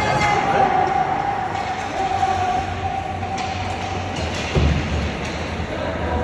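Ice rink game ambience: a steady wash of arena noise with faint spectator voices, light clicks of sticks and skates on the ice, and one dull thump a little past halfway.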